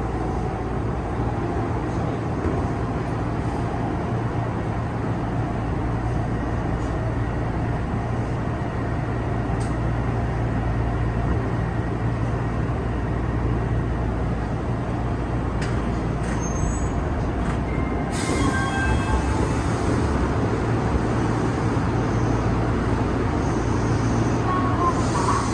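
Odakyu 8000 series commuter train running through a tunnel, heard from inside the driver's cab: a steady rumble of wheels and running gear with a constant low hum. From about two-thirds of the way in, a hiss and a few short high squeals join in.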